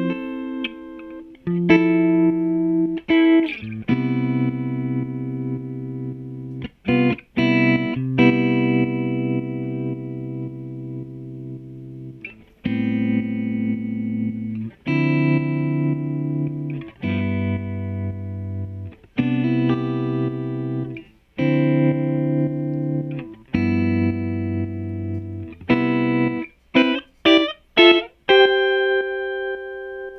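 Electric guitar chords from a Fender Stratocaster played through a JHS Kodiak tremolo pedal into a Fender '65 Twin Reverb amp, the held chords pulsing quickly. The chords change about every two seconds, with a run of short choppy stabs near the end.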